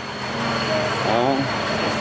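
Steady mechanical rumble and hiss, with a short spoken 'À' about a second in.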